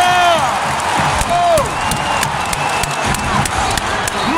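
Basketball arena crowd cheering loudly after a dunk, with nearby fans letting out long whoops that fall off at the end, shorter shouts, and scattered sharp claps.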